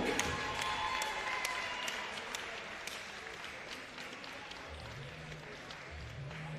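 Audience applause dying away, with scattered single hand claps that thin out.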